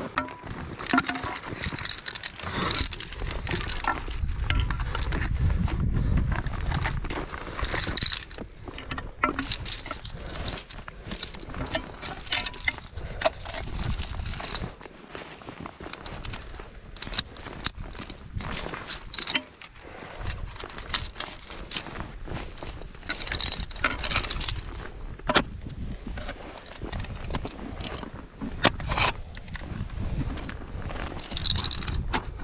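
Irregular metallic clinking and scraping of climbing gear as it is handled and moves during the climb, with sharp clicks scattered through, and a low rumble from about three to seven seconds in.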